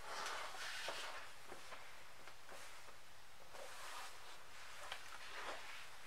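Faint handling sounds of an open-face motorcycle helmet's goggle and face mask being fitted: a few soft clicks and rustles over a low, steady room hiss.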